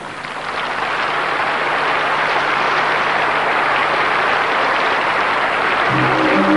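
Arena audience applauding, building over the first second into a loud, even clapping.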